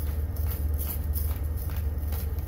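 Hand-twisted peppercorn grinder cracking whole peppercorns in a series of short, irregular gritty grinds, over a steady low hum.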